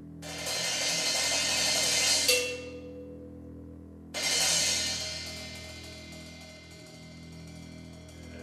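Live ensemble music over a low held drone. A metal percussion roll on cymbal or gong swells for about two seconds and ends on a sharp struck accent. After a short pause a second crash comes in suddenly and rings away over about two seconds.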